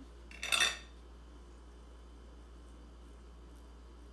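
A metal spoon scraping briefly about half a second in as it scrapes the leathery skin off a baked butternut squash half, followed by a few faint small ticks.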